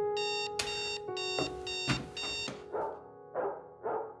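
Electronic alarm clock beeping in rapid short pulses, about four a second, over soft piano music. The beeping stops about two and a half seconds in, and a few short rough bursts follow.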